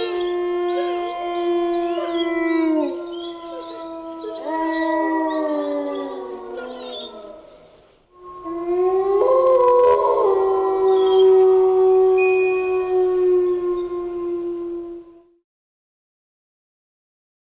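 Wolf howls: several overlapping howls that sag in pitch and fade out by about eight seconds in, then one long, steady howl that cuts off about fifteen seconds in.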